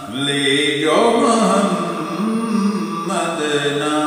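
A man singing an Urdu naat, a devotional chant drawn out in long held notes that glide up and down in pitch.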